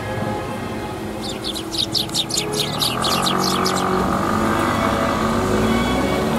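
Eurasian tree sparrows chirping in a quick run of short high chirps, about five a second, from about a second in for two and a half seconds, over background music with held notes.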